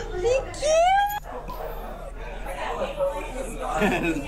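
A loud, high-pitched squeal rising in pitch, lasting about half a second and ending suddenly just over a second in, followed by talking.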